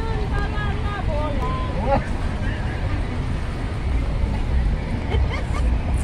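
Indistinct voices talking at a street-food stand, clearest in the first two seconds, over a steady low rumble of city street noise.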